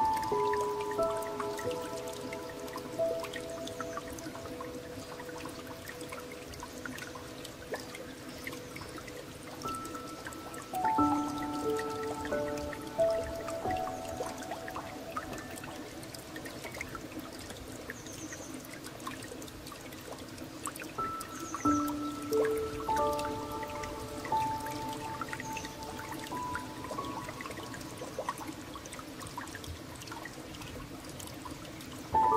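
Slow, gentle solo piano music, a few notes at a time in phrases that come about every eleven seconds and fade away, over the steady sound of trickling, dripping water.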